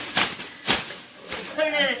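A large thin plastic bag being shaken and flapped open, giving a few sharp crinkling rustles, the loudest about three quarters of a second in.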